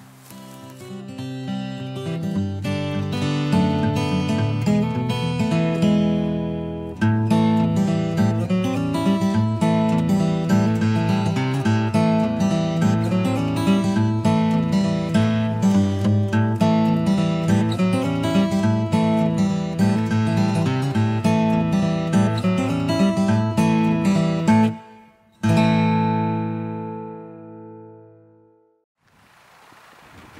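Acoustic guitar music, plucked and strummed in a steady rhythm, fading in over the first few seconds. It breaks off near the end and closes on a single chord that rings out and fades.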